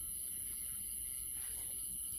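Quiet, steady background noise with a constant high hiss and no distinct sound event.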